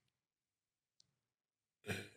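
Near silence with a faint click about a second in, then a man's intake of breath just at the end as he is about to speak.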